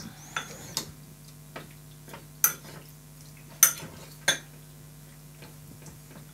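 Metal spoon stirring sour cherries with cinnamon in a white ceramic bowl, clinking against the bowl about half a dozen times at irregular intervals. The sharpest clinks come about two and a half and three and a half seconds in.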